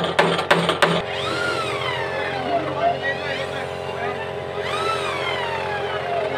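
A claw hammer knocks several quick times on the wooden door frame during the first second. Then a cordless drill runs in a couple of bursts, its whine rising and falling in pitch as the trigger is squeezed and let go.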